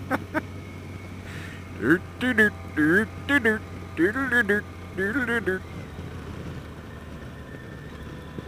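Steady low hum of a Yamaha FJR1300's inline-four engine and wind at riding speed. From about two seconds in to past five seconds, a person's voice is heard over it, with no words made out.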